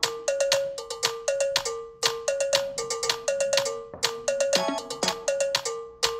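A looped electronic music pattern of quick, short struck notes that ring briefly, hopping between two close pitches and repeating about every two seconds.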